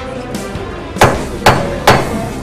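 A wooden gavel rapped three times, sharp knocks about half a second apart, with faint music underneath.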